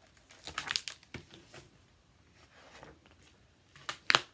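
Pages of a picture book being turned by hand: a run of short paper rustles and flicks.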